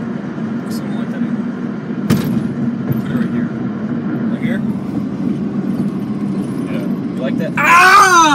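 Steady road and engine noise inside a moving car's cabin, with a sharp click about two seconds in. Near the end a person cries out loudly, the voice falling in pitch.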